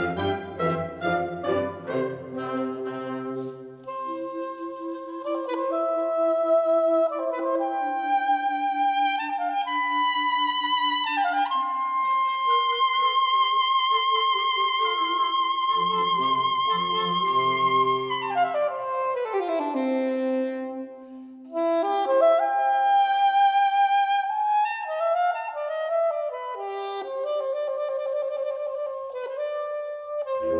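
A soprano saxophone plays a solo line over a small wind ensemble of flutes, clarinets and brass. It opens with the full band and low parts, then thins to lighter accompaniment. A long held high note comes near the middle, followed by a quick falling run.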